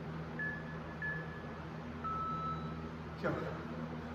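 Electronic workout interval-timer beeps: two short high beeps about half a second apart, then a longer, slightly lower beep about two seconds in, marking the start of a timed work interval. A brief loud voice-like exclamation follows about three seconds in, over a steady low hum.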